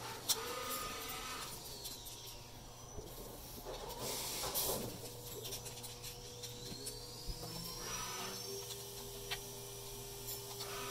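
Quiet hand-fitting of a metal and plastic fairing-mount bracket onto a recumbent trike's boom clamp: light clicks of parts meeting, a brief rustle about halfway, and a faint rising squeak near the end.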